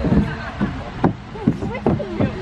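A person laughing in short bursts.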